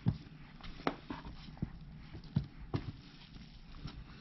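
Hands pushing and pressing damp worm castings and shredded paper bedding in a plastic bin: an irregular scatter of short knocks and rustles, the first the loudest.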